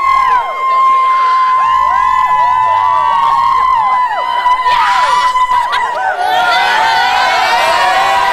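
A group of young teenage girls cheering and screaming together: one long high scream held steady throughout, with other voices whooping up and down over it.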